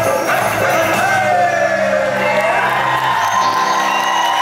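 A Bollywood song played live by a band with drums, keyboard and bass guitar, with a singer holding one long gliding note in the middle.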